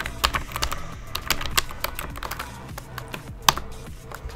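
Computer keyboard typing: a run of quick, irregular keystrokes with one louder key click about three and a half seconds in.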